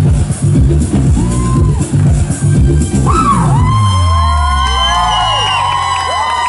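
Electronic pop song with a pulsing bass beat that ends about halfway through on a falling bass slide. A concert crowd then cheers, with many high-pitched screams and whoops overlapping.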